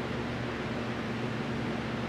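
Steady fan hum and hiss from a space heater, with a constant low drone.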